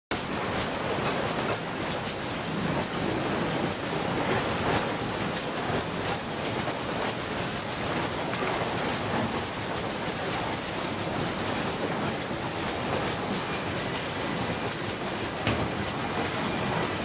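Waste-sorting line running: conveyor belts and sorting machines give a steady, dense rattle and clatter as waste moves along the lines.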